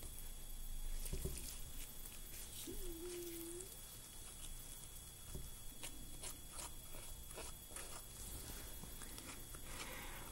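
Faint scraping and small clicks of a scalpel cutting through the stiff, rubbery skin of a preserved dogfish shark, with a brief low steady tone about three seconds in.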